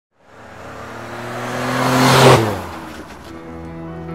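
Intro sound effect of a car rushing past: a rising engine note and whoosh that build to a loud peak a little over two seconds in, then drop in pitch and fall away. Sustained music notes follow near the end.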